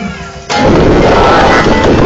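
A live rock band playing through a poor, overloaded recording. After a brief drop, the full band comes back in loud and harsh about half a second in.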